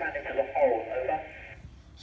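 A man's voice received over an amateur radio downlink from the International Space Station, thin and radio-filtered, speaking until about one and a half seconds in and then breaking off into a short quiet pause.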